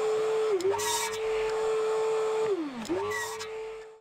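Electric mitre saw running with a steady whine while boards are cut, with a burst of cutting noise about a second in. The motor winds down about two and a half seconds in, is started and spun back up, and a second cut begins before the sound cuts off suddenly at the end.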